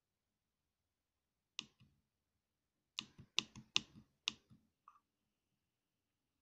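Keypad buttons of an RF Explorer handheld spectrum analyzer clicking as they are pressed to step through its frequency menu. There is a single press about a second and a half in, then a quick run of clicks from about three to five seconds in.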